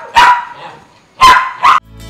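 A dog barking loudly in short sharp barks: one near the start, then two in quick succession just after a second in.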